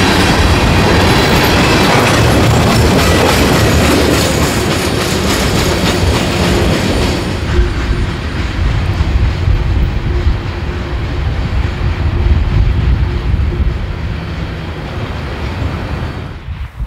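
Freight train of loaded tank cars rolling past close by, a loud, dense rumble and clatter of steel wheels on the rails. About halfway through, after a cut, the sound becomes a quieter, lower rumble as a train of tank cars moves away along curved track.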